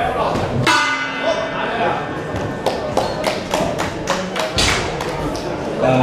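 A boxing ring bell rings once, less than a second in, and fades over about a second, ending the round. It is followed by a run of sharp knocks and thuds in the hall.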